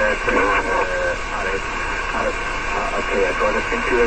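A voice received in single-sideband on the 6-metre band through a ham radio's speaker. The audio is narrow and thin, cut off above about 3 kHz, with a steady hiss under it.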